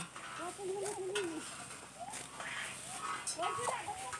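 Voices talking in the rice field, with a few short, crisp snaps of rice stalks being cut by hand with sickles.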